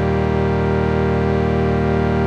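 Ableton Live's Analog synthesizer holding one steady chord, built from two sawtooth oscillators and a little noise through a low-pass filter, with no attack or release shaping, before any rhythmic volume automation is applied.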